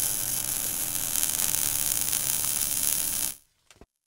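Steady hissing, static-like noise with a faint low hum under it, the sound effect of a glowing, ember-style logo animation. It cuts off suddenly about three and a half seconds in, leaving silence.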